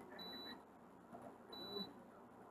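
Near silence broken by a faint, short, high-pitched electronic beep, heard twice about a second and a half apart.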